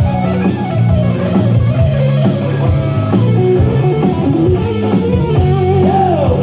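Live rock band playing an instrumental passage: a lead electric guitar line with bending, sliding notes over a bass guitar.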